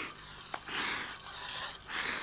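A person breathing heavily: soft, breathy breaths in and out, about one every second.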